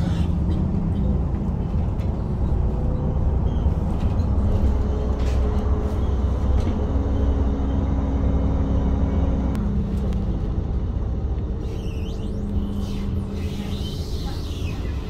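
City bus heard from inside the passenger cabin while driving: a steady low engine and road rumble, with the engine note stepping to a new pitch a few times.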